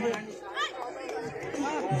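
Spectators' chatter: several voices talking at a lower level, with no single voice standing out.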